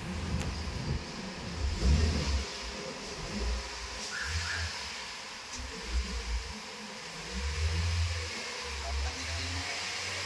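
Honda car engine idling in Drive at about a thousand rpm, heard from inside the cabin: an uneven low rumble that swells and fades every second or two, over a steady hiss.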